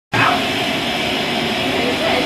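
Steam locomotive standing with a steady hiss of escaping steam.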